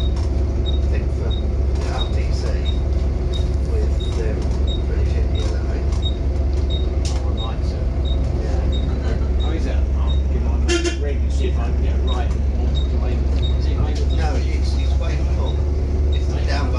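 Volvo B7TL bus's diesel engine running with a steady low drone, heard from inside the lower deck. A light regular ticking about twice a second runs alongside it, and a short high tone sounds about eleven seconds in.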